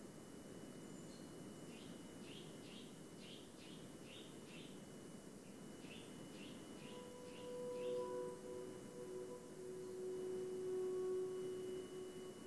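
Faint birdsong: a run of short chirps, about two a second, for some six seconds over a low steady hiss. From about seven seconds in, long steady held tones take over.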